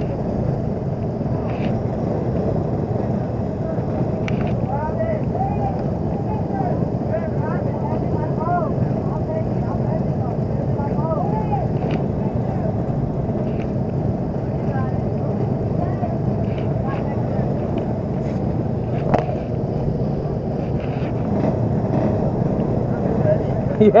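Racing kart engine idling steadily while the kart stands still, with faint distant voices.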